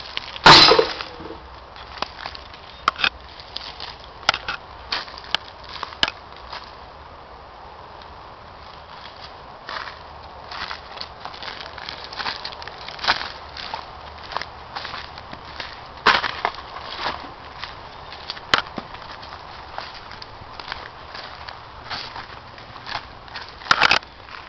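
Footsteps crunching through dry leaves and twigs on a forest floor: scattered irregular crackles and snaps, the loudest about half a second in.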